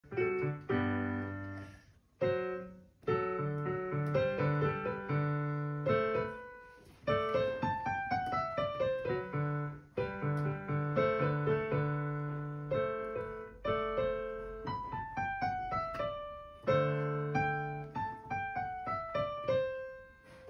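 A child playing a beginner's piece on a digital piano: a melody of falling note runs over low held bass notes, in short phrases separated by brief breaks.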